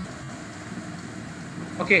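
Steady background hiss and hum from an open microphone on a video call, with no one speaking; a single spoken 'okay' comes near the end.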